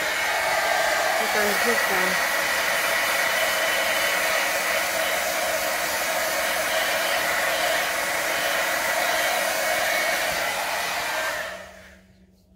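A handheld hot-air blower of the hair-dryer kind runs steadily for about eleven seconds, aimed over wet acrylic pour paint, then is switched off and runs down near the end.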